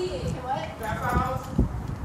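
Indistinct voices talking, with low thuds and knocks from the phone being jostled as it is swung around.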